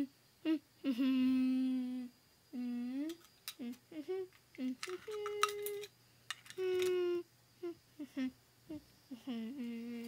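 A person humming a series of short held notes with closed mouth, some sliding up or down in pitch, with pauses between them. A few sharp clicks of hard toys being handled fall around the middle.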